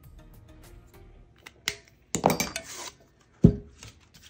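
Handling sounds of a stainless steel tumbler on a work table: a click, about a second of rustling clatter, then a sharp knock with a short metallic ring as the tumbler is set down upright.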